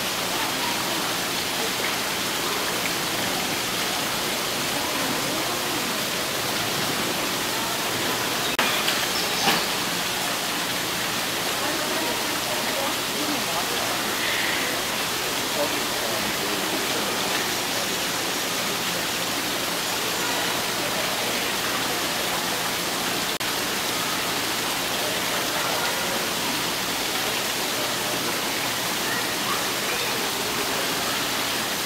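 Steady rush of running water. There are a couple of sharp knocks about nine seconds in and a brief high chirp a few seconds later.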